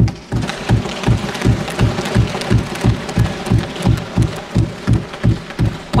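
Members of Parliament thumping their wooden desks in approval, many hands beating together in a steady rhythm of about two to three thumps a second over a general clatter.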